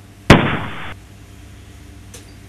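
A single shotgun blast about a third of a second in, with a short tail that cuts off abruptly about half a second later.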